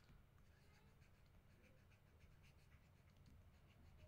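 Near silence with faint, irregular little ticks and scratches of a stylus writing on a tablet surface, over a low steady hum.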